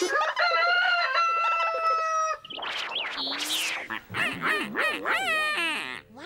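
A rooster-like cock-a-doodle-doo crow, one long high call held for about two seconds, followed by squawks and a fast wavering, warbling call near the end.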